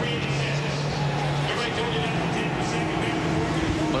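Team radio from a Top Fuel drag racing crew: hard-to-make-out radio voice over a steady hum and noise.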